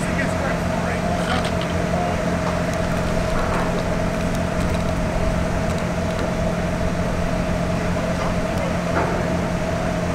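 A steady machine hum with a constant low tone and a higher held tone, running without change, with faint voices in the background.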